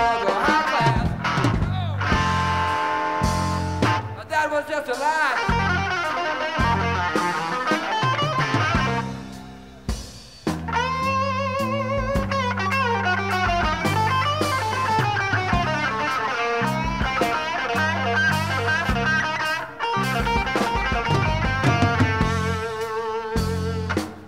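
Electric guitar lead over bass guitar and drums: a live blues-rock trio's instrumental break, with bent, wavering guitar notes. The band drops briefly about ten seconds in, then comes back in.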